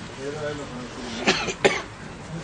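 A person coughing twice in quick succession, two short sharp coughs in the second half, with faint voices in the room before them.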